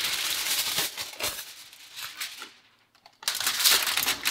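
Aluminium kitchen foil being pulled off the roll with a dense, continuous rustle, then crackling as it is handled and pressed flat by hand. After a brief pause there is a louder burst of crinkling near the end.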